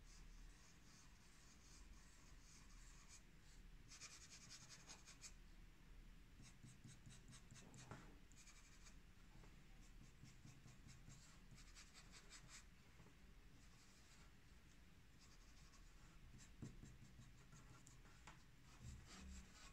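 Faint scratching of a hand-ground two-layer cross point fountain pen nib on paper. It comes in short bursts of quick strokes as lines and zigzags are written.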